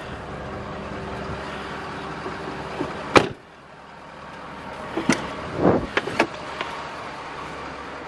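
Pickup truck door shut with one loud slam about three seconds in, cutting off a steady hum heard from inside the cab. A few lighter clicks and a thump follow about two seconds later as the next door is opened.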